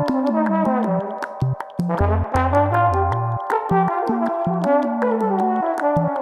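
Trombone solo playing stepped, falling phrases over a low bass line and ticking percussion.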